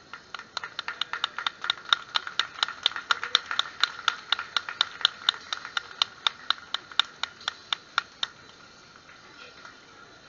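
A high-pitched percussion instrument struck in a fast, steady rhythm, about five crisp strokes a second, each with a short ringing tone. The strokes stop abruptly a little after eight seconds in.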